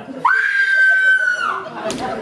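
A woman's voice crying out one long, high note that slides up at the start, then holds steady for about a second before breaking off.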